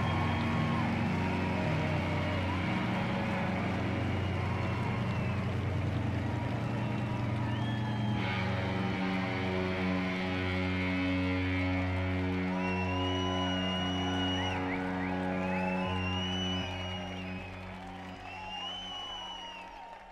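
Live rock band holding sustained outro chords that shift to a new chord about eight seconds in, with crowd cheering and whistling over them. The sound fades away near the end.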